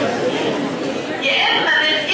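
Several voices talking at once in a large hall: students murmuring and calling out answers over one another.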